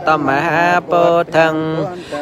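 A single voice chanting a Buddhist text in long, melodic, wavering phrases, breaking briefly for breath about once a second.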